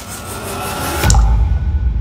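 Intro sting of produced sound effects: a rising whoosh swells for about a second and ends in a sudden deep hit, followed by a sustained low rumble.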